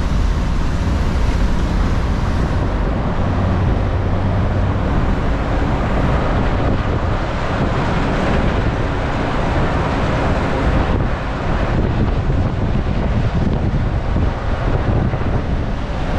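Inside an old non-air-conditioned city bus on the move: steady engine rumble and road noise, with wind rushing in through the open door and buffeting the microphone.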